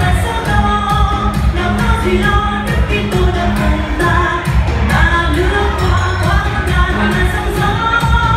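Upbeat pop song with a singer over a steady beat.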